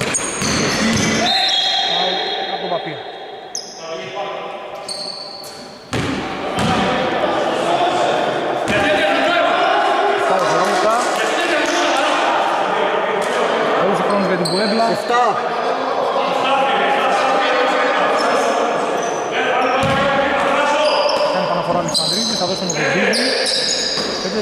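Basketball bouncing on a hardwood gym floor, echoing in a large sports hall, with voices over it, louder from about six seconds in.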